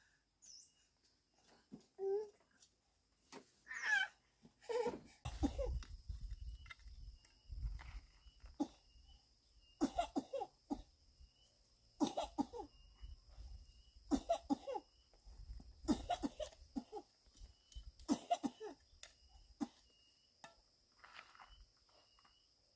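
A person coughing repeatedly, in short bouts that come about every two seconds through the second half.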